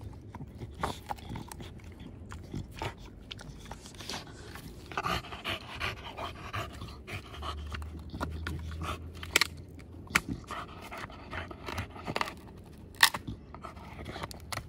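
American bully dog gnawing a flat piece of wood, with its panting breaths and scattered sharp cracks and crunches of the wood under its teeth; two louder cracks come in the second half.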